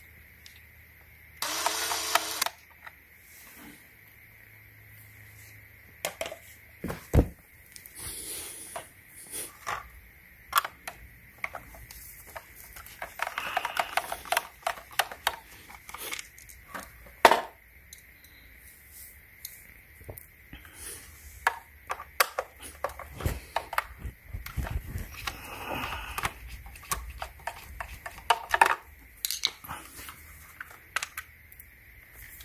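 Scattered plastic clicks, knocks and scrapes as the plastic housing of a Black & Decker Pivot handheld vacuum is handled and its screws are worked with a screwdriver. There is a short rattling burst about two seconds in, a dull thump a few seconds later, and the loudest sharp click a little past the middle.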